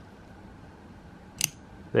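Hawk Knives Shortcut utility knife's blade snapping shut in its lock: one sharp metallic click, a quick double snap about one and a half seconds in.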